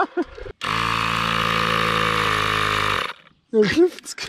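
Cordless battery-powered mini tyre pump running steadily for about two and a half seconds, inflating a moped's flat rear tyre. It starts and stops abruptly.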